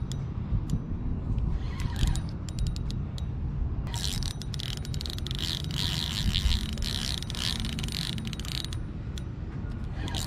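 Spinning reel clicking while a hooked channel catfish pulls against it: a few scattered clicks, then from about four seconds in a dense run of rapid clicking lasting several seconds, the drag giving line to the fish. A low rumble of wind on the microphone runs underneath.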